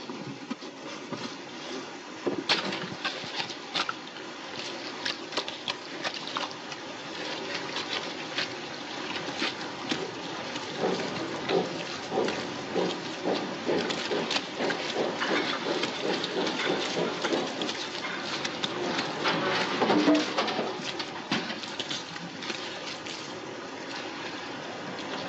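Steady rain falling, with scattered knocks, scuffs and clatter over it, thickest in the second half and loudest shortly before the end.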